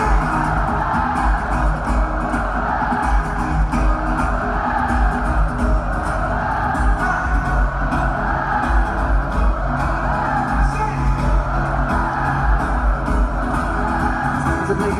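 Live amplified concert music heard from the audience of an arena through a phone microphone: a pulsing bass beat with singing and guitar, blended with the crowd's dense, steady noise.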